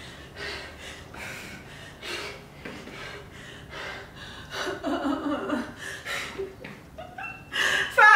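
A woman breathing hard in short, quick puffs during a cardio interval, with a breathy laugh about five seconds in.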